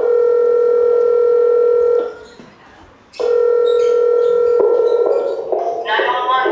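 Telephone-style electronic tone in a dance performance's music track: a steady beep lasting about two seconds, a pause of about a second, then a second beep that gives way to music.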